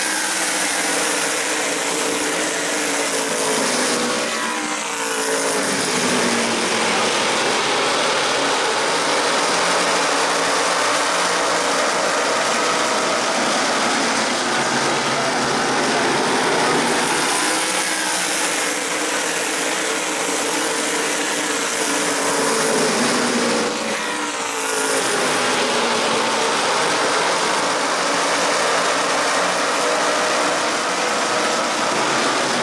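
A field of tour-type modified race cars running at full throttle, their V8 engines a steady layered drone. Twice, about twenty seconds apart, the pitch sweeps down as the pack passes.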